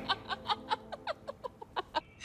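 Soft, breathy laughter: a run of short chuckles, about five a second, tapering off.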